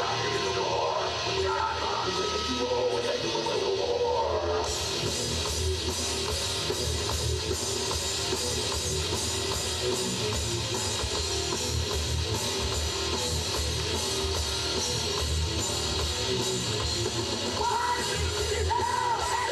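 Live heavy metal band playing: distorted electric guitar lines over bass and drum kit. About five seconds in, crash cymbals and the full band come in, filling out the sound.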